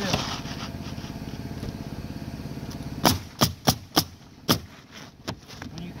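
Pneumatic roofing nailer firing five nails in quick succession into asphalt shingles, starting about three seconds in. Before that a steady motor drone is heard, which fades as the nailing begins.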